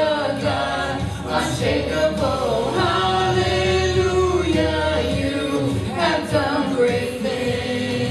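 A small church worship team singing a slow praise song together, with long held notes.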